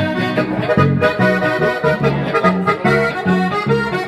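Button accordion playing an instrumental folk tune in full chords, with an archtop guitar strumming the accompaniment over a steady beat of bass notes.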